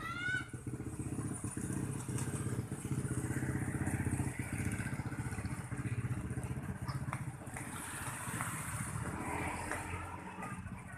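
An engine running close by with a fast, even pulse. It grows louder over the first few seconds and then fades, as a vehicle does going past.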